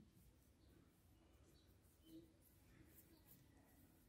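Near silence: room tone, with one faint short sound about two seconds in.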